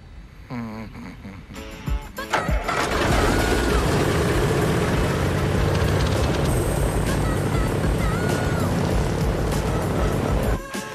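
An airliner's engine starts up and, about two and a half seconds in, settles into a loud, steady running drone, with film-score music playing over it.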